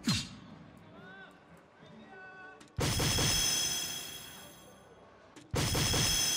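Electronic hit sound effects from a DARTSLIVE soft-tip dartboard machine, three in all, about two and a half seconds apart, one for each dart that lands. Each begins suddenly with a crash-like burst and rings with steady electronic tones as it fades. These are the board's effects for scoring hits in Cricket.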